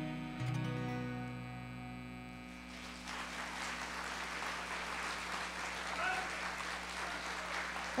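The last chord of a song on bowed cello and acoustic guitar rings out and stops about two and a half seconds in, and an audience then applauds.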